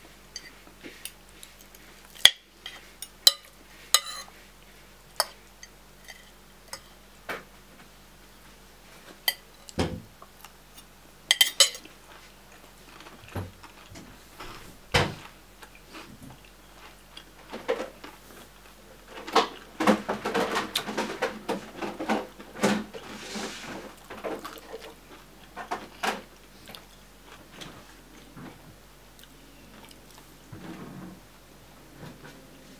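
Metal spoon and fork clinking and scraping against a plate while eating, a string of separate sharp clinks with a busier stretch of clatter a few seconds past the middle.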